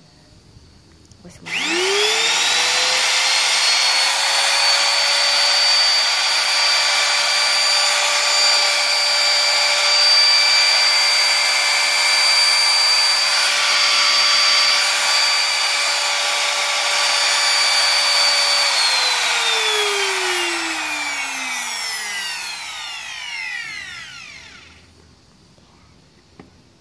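Bosch GMR 1 trim router switched on about a second and a half in, winding up quickly to a steady high-pitched whine and running with no load. Around eighteen seconds in it is switched off and winds down with a falling whine, fading out over several seconds.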